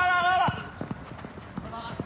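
A man's drawn-out shout fills the first half second. A quieter run of short, irregular knocks follows: players' running footsteps and touches of the football on artificial turf.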